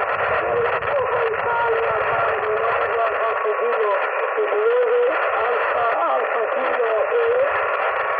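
Received audio from a Yaesu FT-817 portable transceiver: a weak voice, a distant station sending its callsign in reply to a request to complete the call, buried in steady band hiss. The sound is thin and narrow, like a telephone.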